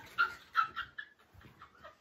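A few short, faint, high-pitched squeals of a girl's stifled laughter in the first second, then near quiet.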